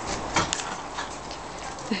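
Horse chewing carrot, a few short crisp crunches, with a person's short laugh near the end.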